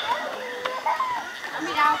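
Children's voices and background chatter: high-pitched calls and talk from several people.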